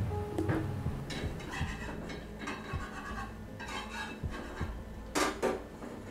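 A spatula scraping and clinking in a frying pan on a stove, with two sharper knocks about five seconds in. Low background music plays under it.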